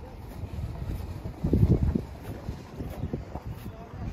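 Wind buffeting the microphone as a low, uneven rumble, with a stronger gust about halfway through.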